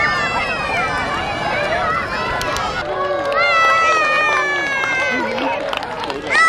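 Children's long, high-pitched shouts, each slowly falling in pitch, over crowd chatter, with a few sharp crackles from a large wood bonfire.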